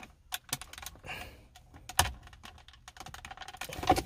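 Scattered plastic clicks and taps of a car's interior trim panel and a wiring connector being handled while the cigarette lighter plug is worked loose, with the sharpest click about halfway through.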